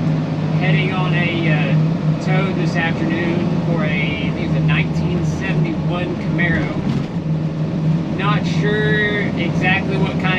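A man talking over the steady low drone of a tow truck's engine and road noise inside the moving cab.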